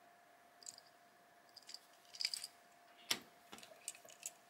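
Small clicks and light rattles of diecast toy cars being turned over and handled in the fingers. A sharper click comes about three seconds in.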